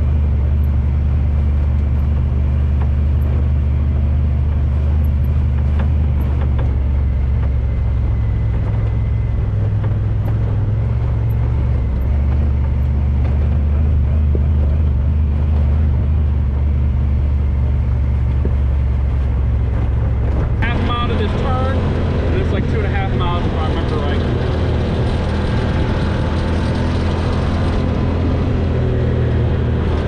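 Honda Talon side-by-side's parallel-twin engine running steadily under way, a strong low drone. About two-thirds of the way through the low drone drops back and wavering higher tones come in over it.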